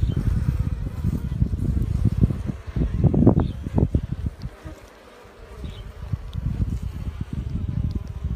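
Honeybees buzzing close around an opened wild nest as honeycomb is pulled away by hand, over a low rumble that drops away briefly about five seconds in.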